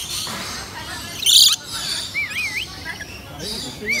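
A flock of lories and lorikeets chattering as they feed, with one loud, harsh screech about a second in, then short wavering whistled calls.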